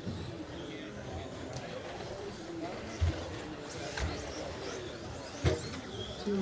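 Indoor RC racing ambience: Traxxas Slash stock-class RC trucks running on the track under background voices in the hall. Two sharp knocks stand out, about three seconds in and near the end.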